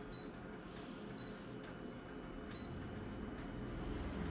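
Photocopier touchscreen control panel giving three short, high key-press beeps, a second or more apart, as its on-screen buttons are tapped, over a faint steady hum.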